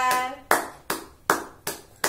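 A man clapping his hands, about five claps a little under half a second apart, just after a sung note trails off.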